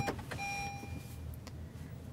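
A sharp click, then a short steady electronic beep from the Lexus NX 300h's cabin system, followed by a few light clicks and knocks of handling inside the car over a low steady hum.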